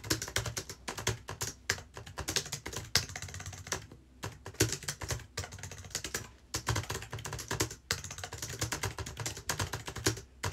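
Fast typing on a low-profile computer keyboard: a rapid run of key clicks, broken by a few short pauses.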